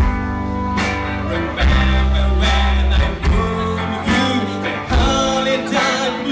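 Live band playing a slow number on electric guitars, bass and drums, with drum hits every second or so over held bass notes.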